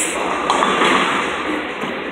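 Bowling ball rolling down a wooden lane amid the steady noise of a bowling alley hall, with a faint knock about half a second in.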